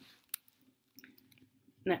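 Quiet pause with small mouth clicks close to the microphone and one sharper tick about a third of a second in; the voice returns near the end.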